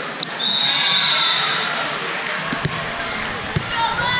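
Busy indoor volleyball hall: a steady din of many voices echoing in a very large room, with a high-pitched tone held for about a second near the start and balls thudding on the hard court a few times in the second half.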